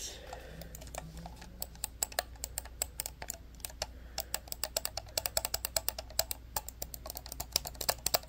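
Plastic computer mouse clicked and tapped with the fingers: quick, uneven runs of sharp little clicks, sparse at first and denser from about a second and a half in.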